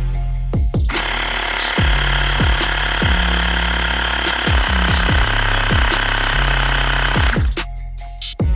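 Xiaomi Mi portable electric air compressor running steadily as it inflates a scooter tire. It starts about a second in and cuts off near the end as the set pressure is reached. Background music with a steady kick-drum beat plays over it.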